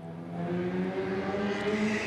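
A motor vehicle engine running, its pitch rising slowly, with road noise building toward the end.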